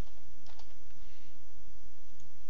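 A few faint computer keyboard keystrokes over a steady low hum.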